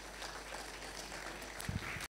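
Light, scattered applause from a seated audience in a hall, with a short low thump near the end.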